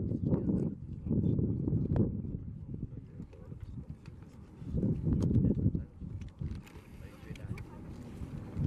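Deep rumbling of erupting lava fountains at fissure vents, rising and falling in surges, with a strong surge over the first two seconds and another about five seconds in.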